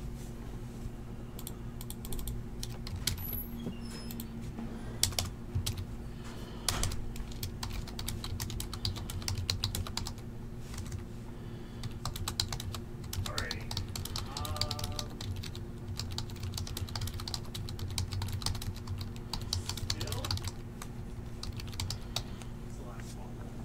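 Quick, irregular runs of clicks from typing on a computer keyboard, over a steady low electrical hum.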